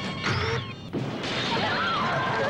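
Horror trailer sound effects: a sudden crash about a second in, with music.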